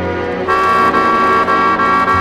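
Instrumental introduction of a vintage French chanson recording: the band plays sustained chords, changing chord about half a second in, before the voice enters.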